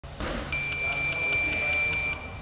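A steady, high-pitched electronic beep tone that starts about half a second in and holds for about a second and a half.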